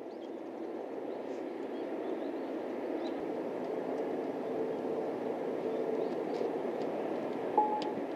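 Steady outdoor background rumble, slowly growing a little louder, with a brief sharp sound and a short tone near the end.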